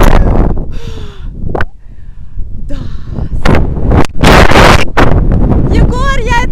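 Wind buffeting an action camera's microphone in loud gusts as a rope jumper swings fast through the air on the rope, easing off briefly midway and rising again for the strongest gust late on. A short vocal sound cuts through about a second in.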